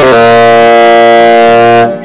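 Tenor saxophone holding one long, loud, steady note for nearly two seconds, cut off shortly before the end.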